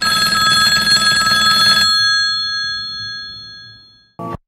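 Old-style electromechanical telephone bell ringing in one burst of about two seconds, then the bell tones ringing on and fading away over the next two seconds.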